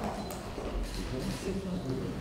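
Faint background voices and murmur in a meeting hall, with a light click or two about a quarter of a second in.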